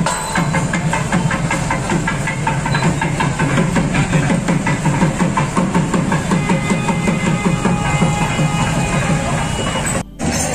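Several motorcycle engines running slowly together, mixed with loud music that has a beat.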